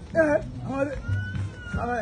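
A song: short, high, wavering vocal phrases over a low steady bass, with a thin held tone in the middle.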